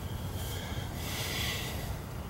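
A person breathing out slowly through the nose, two soft breaths, over a low steady background rumble while holding aim on a rifle.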